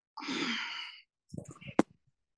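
A woman's audible sigh, a long breathy exhale lasting just under a second, followed by a few faint breath or mouth sounds and a sharp click near the end.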